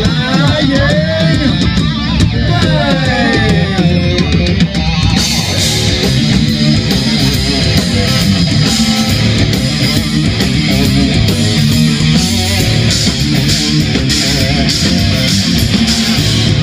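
A heavy metal band playing live: electric guitars and drums, with a sung vocal line over the first few seconds. From about five seconds in, the cymbals come in hard and keep crashing.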